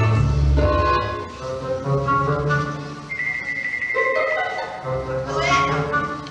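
Instrumental music accompanying a stage dance, over a steady low bass line. A single high note is held for about two seconds midway, and a rising run of notes comes near the end.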